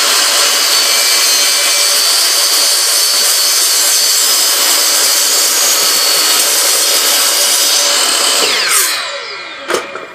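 DeWalt miter saw running loud and steady as its blade cuts through a PVC coupler, then winding down with a falling whine near the end, followed by a sharp click.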